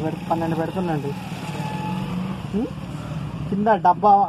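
Brief speech at the start and again near the end; in between, a steady low mechanical drone, like an engine running.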